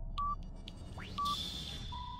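Electronic intro sound effects: short beeps about once a second over a low steady rumble, with a rising glide about a second in and a high steady tone after it.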